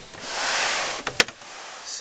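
Handling noise from the open computer case: a brief rustling swish, then one sharp click just over a second in.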